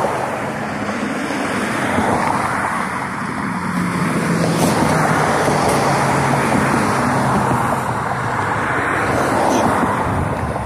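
Road traffic passing close by, several cars going by one after another in swells of engine and tyre noise, loudest around the middle.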